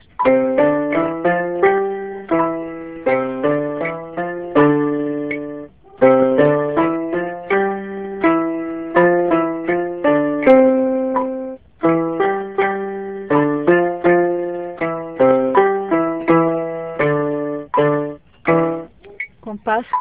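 Electronic keyboard in a piano voice playing a finger dexterity exercise with both hands: even, separate notes moving step by step. The notes come in three phrases with short breaks about six and twelve seconds in.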